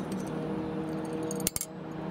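Two sharp metallic clicks in quick succession about one and a half seconds in, as the flag and trip mechanism of a Reyrolle electromechanical protection relay are reset by hand. A faint steady hum runs under them.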